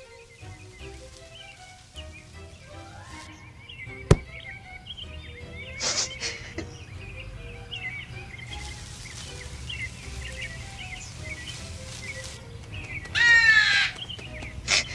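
Cartoon soundtrack: soft background music with small chirping bird sound effects, a sharp click about four seconds in, and a loud bird call near the end.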